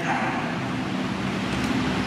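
A congregation applauding steadily, many hands clapping together.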